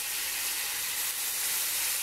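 Bone-broth fat sizzling steadily in a hot cast-iron skillet. The fat still holds some broth, and that water in it is what makes it sizzle and spit.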